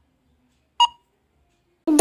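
One short electronic countdown-timer beep about a second in, ticking off the last second of the countdown. A voice starts right at the end.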